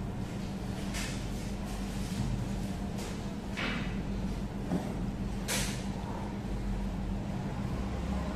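Steady low background hum with four short, crackly bursts about one, three, three and a half and five and a half seconds in, as a man bites and chews crisp pepper flatbread.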